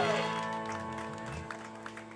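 A live country-rock band's final chord on guitars, bass and drums rings out and fades steadily, with a few light taps as it dies away.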